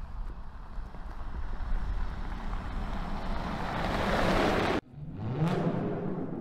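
Hydrogen fuel-cell Toyota Hilux pickup driving over loose gravel: a rushing tyre-and-wind noise that swells and cuts off sharply just before five seconds in. It is followed by a short rising whoosh.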